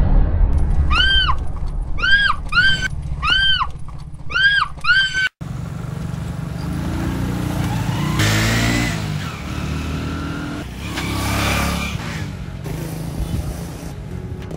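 A rapid series of short, high cries over a loud low rumble. After a sudden cut, a small motorcycle engine runs and passes by, its pitch rising and falling twice.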